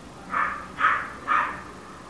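A bird calling: three short caws, about half a second apart.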